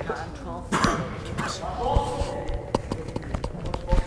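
Indistinct voices of several people talking in a large hall, with a few sharp knocks, the loudest near the end.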